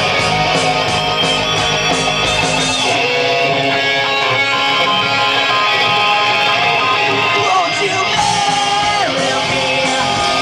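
A rock band playing live, with electric guitars to the fore. About three seconds in, the deep bass and drums drop away, leaving the guitars and a sustained melody line.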